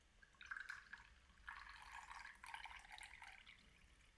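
Faint sound of liquid being poured: a short trickle about half a second in, then a longer one from about a second and a half until near the end.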